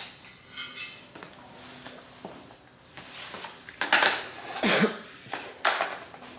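A tape measure being handled against a glazed ceramic plant stand: a few short scrapes and clinks, the sharpest about four seconds in and near the end.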